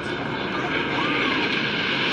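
Jet airliner flying in low, its engine roar growing steadily louder.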